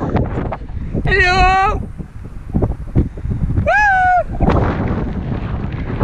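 Gusty wind buffeting the camera microphone, with two short, high-pitched wavering calls, one about a second in and one near the four-second mark.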